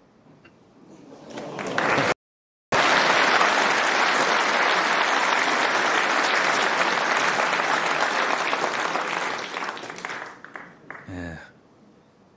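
Snooker audience applauding: the clapping builds over the first two seconds, holds steady, then dies away about ten seconds in. About two seconds in, the sound cuts out completely for half a second.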